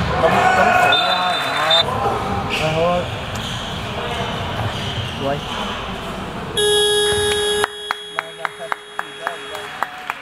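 Players' shouts and ball and shoe noise on a handball court, then about six and a half seconds in a steady electronic buzzer tone, the full-time signal. About a second later the hall noise drops out, leaving the tone with a run of sharp clicks until it stops near the end.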